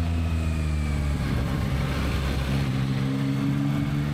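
Yamaha MT-09 Y-AMT's 890 cc CP3 inline three-cylinder engine running under way on the road. About halfway through, its note breaks and settles at a different pitch as the automated manual gearbox changes gear on its own.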